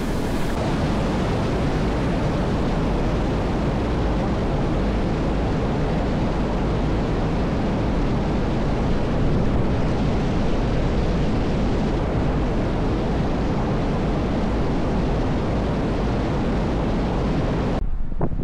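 Fast water rushing and splashing as it pours down past a stone wall, a loud steady noise with no break.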